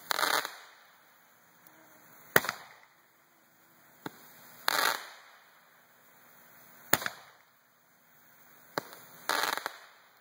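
A set of Roman candles firing shot after shot, about every two to two and a half seconds. Some shots are a single sharp pop; others carry on for about half a second as a rough, crackling burst.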